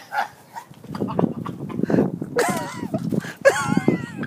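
A man coughing, gagging and retching with strained, wavering cries after taking a spoonful of dry ground cinnamon, his airway choking on the powder. The rough hacking starts about a second in, with the cries about halfway through and again near the end.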